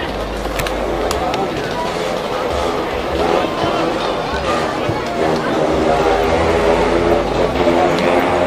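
Indistinct chatter of several people talking, over a low rumble that comes and goes.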